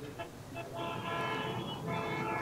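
A vehicle horn sounding as one steady, held blare. It starts about half a second in and dips briefly near the end.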